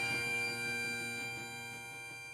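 Bagpipe music holding a final sustained note over its steady drones, fading out gradually.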